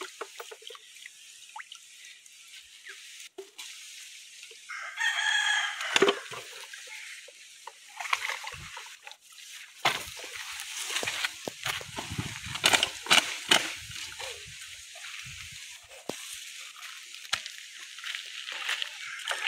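A single loud pitched call about five seconds in, like an animal's cry. It is followed by irregular rustling and knocks as the bottle, weighted with a stone, is carried on a wooden stick.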